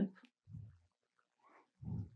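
A pause in speech, mostly quiet, with two short, faint low vocal sounds from the speaker: one about half a second in and one just before the end.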